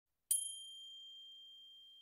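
A single high chime struck once about a third of a second in, its clear ringing tone slowly fading.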